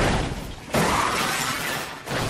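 Crash sound effects from an animated race car wreck: shattering and breaking debris, with a louder surge about three quarters of a second in. The audio is pitch-processed by an autotune edit.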